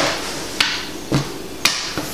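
Small plastic nock-turning tools knocking against a hard stone worktop as they are handled: four sharp clicks about half a second apart.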